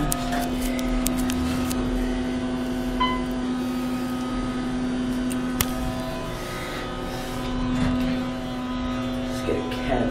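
Otis hydraulic elevator cab starting off and travelling down, a steady hum with scattered clicks and a sharp knock in the middle; the start is rough. A short beep sounds about three seconds in.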